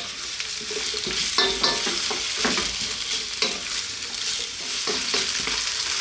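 Sliced onions sizzling in hot oil in a wok, with a wooden spatula scraping and knocking against the pan several times as they are stirred.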